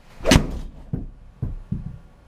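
An Adams MB Pro Black 6-iron strikes a golf ball off a hitting mat into a simulator impact screen: one sharp crack about a third of a second in, followed by three duller thumps over the next second and a half.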